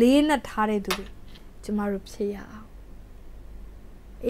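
Speech only: a woman talking in short phrases, falling quiet for about the last second and a half.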